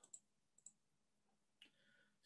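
Near silence with two faint, short clicks about half a second apart soon after the start.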